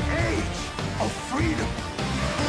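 Loud, dramatic film-trailer music with a crash and wordless voices crying out.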